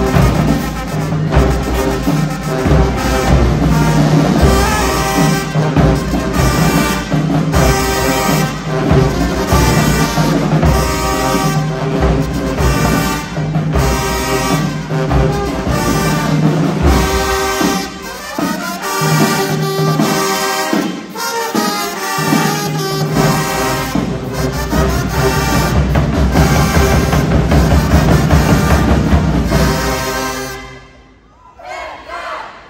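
A high school marching band playing a loud song inside a gymnasium: sousaphones, trumpets and trombones over a steady drumline beat. The deep bass drops away for several seconds past the middle, then comes back in.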